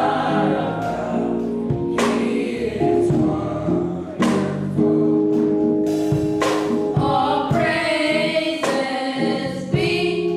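A small group of young male singers singing a gospel song in harmony, holding long notes, over accompaniment with a sharp beat about every two seconds.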